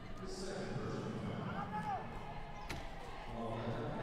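A basketball bouncing on a hardwood court during wheelchair basketball play, with one sharp bounce standing out a little under three seconds in.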